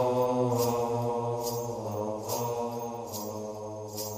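A low voice chanting long, held notes over a steady low drone, with a faint light tap recurring less than a second apart.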